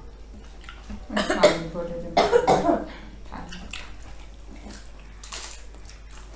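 A person coughing twice, about a second apart, over the small clicks and rustles of people eating by hand.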